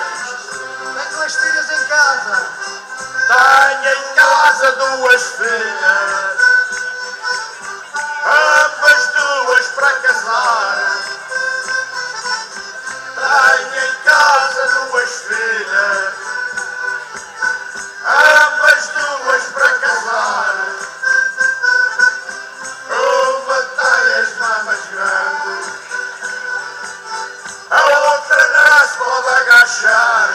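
Live folk music from a band on an amplified stage: men singing in phrases about every five seconds over steady instrumental accompaniment.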